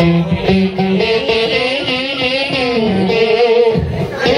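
Electric guitar played live in an instrumental passage: single-note lines whose pitch bends and glides, over a low bass part that drops out about a second in.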